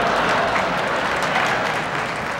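Audience in a large hall applauding, a dense crackle of many hands that swells and then begins to fade near the end.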